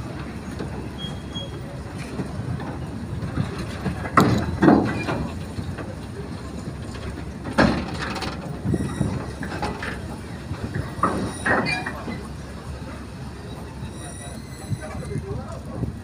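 Loose-coupled goods wagons and vans of a freight train rolling past, their wheels rumbling on the track. Irregular clanks and knocks come from the couplings and rail joints, and there is a faint high wheel squeal near the end.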